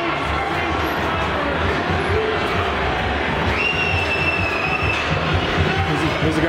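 Ice hockey arena crowd noise and voices, with music playing over them. A long, high, steady tone comes in a little past the middle and holds for about a second and a half.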